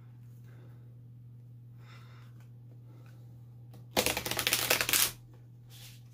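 A tarot deck being shuffled: a quick flurry of cards riffling against each other for about a second, about four seconds in.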